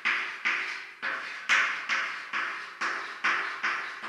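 Chalk on a blackboard: a run of short, sharp strokes, a little over two a second, each fading quickly.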